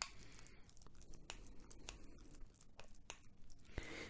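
Metal spoon stirring a thick cream in a glass bowl: faint, uneven scraping with scattered light clicks of the spoon against the glass.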